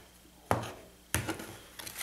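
A deck of cards handled on a table: two sharp taps, about half a second and a little over a second in, with light card-handling noise after each.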